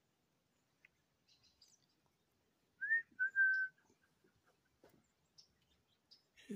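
A person whistling two clear notes a little before the middle: a short rising note, then a longer steady one. Faint high bird chirps come and go around them.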